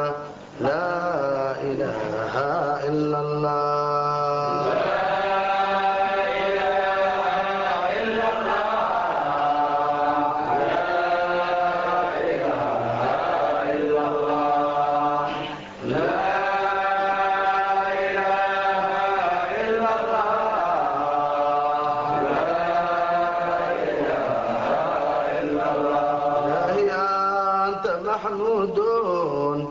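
Arabic Sufi devotional chanting: voices singing a dhikr in long, melodic held phrases, with brief breaks about half a second in and again about 16 seconds in.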